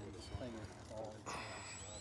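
Faint voices of people talking, with a short breathy rush of noise about a second and a quarter in.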